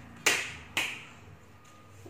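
Two sharp taps about half a second apart, each dying away quickly.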